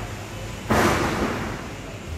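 A sudden loud burst of noise about two-thirds of a second in, fading away over about a second.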